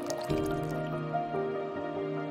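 Slow ambient music of long held synthesizer tones, moving to a new chord just after the start. Water drips and trickles over it during the first part.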